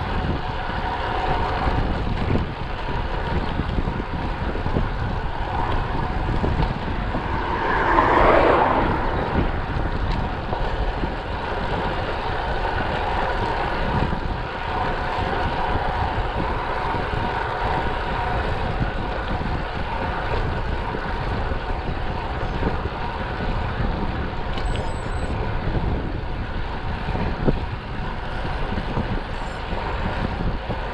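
Wind rushing over the microphone of an action camera on a moving road bike, with tyre noise on asphalt: a steady rushing noise with a brief louder swell about eight seconds in.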